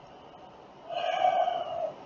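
A single held vocal sound, about a second long, starting about a second in, steady in pitch and without words.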